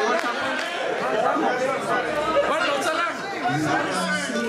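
Several people talking over one another in a large hall: overlapping chatter of many voices, none clear enough to make out.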